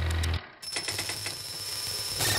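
Electronic sound effects from a TV segment's title sequence. A pulsing sound over a low drone cuts off suddenly about half a second in, then a high, steady whine with hiss follows.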